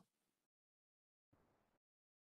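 Near silence, with only a faint, brief hiss about a second and a half in.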